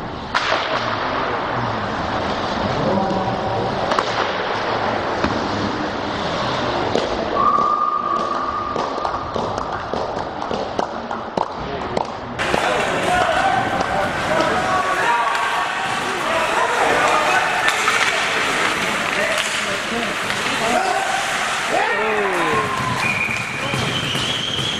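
Ice hockey game sound in a rink: skates scraping, sticks and puck clacking, and spectators' voices and shouts. The first half sounds duller and lower, as if slowed down for a slow-motion replay, then opens up to normal sound about halfway through.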